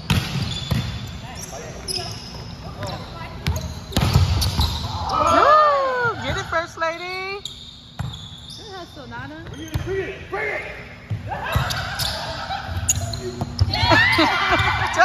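Indoor volleyball being played: a ball struck with the hands and landing with sharp knocks several times, echoing in the gymnasium, with players shouting and calling in between.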